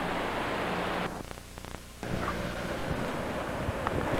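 Steady rushing noise with a low hum, the kind wind or surf makes on a camcorder microphone. It drops away for about a second partway through and then returns.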